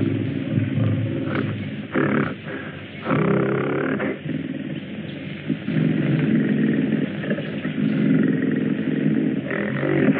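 A large wild animal roaring repeatedly in long drawn-out roars with short breaks between them, on an old film soundtrack with dull, narrow sound.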